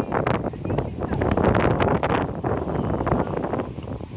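Wind buffeting the microphone: a loud, gusty rumble that eases a little near the end.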